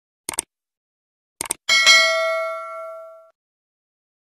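Two quick pairs of clicks, then a single bell-like ding that rings out and fades over about a second and a half, set against dead digital silence: an edited-in sound effect.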